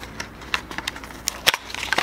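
Small cardboard box being opened by hand: crackling and clicking of the paperboard flaps, with a sharp snap about one and a half seconds in.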